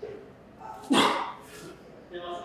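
A man's short, loud, forceful grunt of breath about a second in: the effort of a lifter straining through a heavy Romanian deadlift rep.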